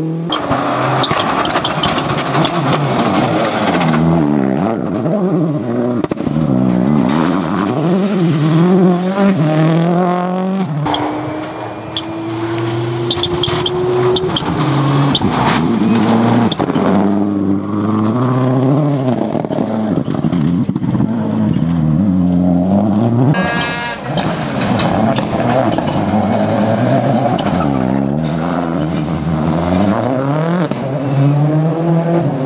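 Rally car engines revving hard at speed, the pitch climbing and dropping repeatedly as the drivers change gear and lift for corners.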